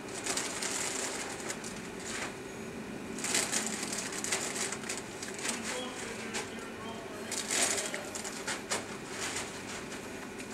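Curling broom and granite curling stones scraping and brushing over the pebbled ice in several short bursts as stones are pushed around the house.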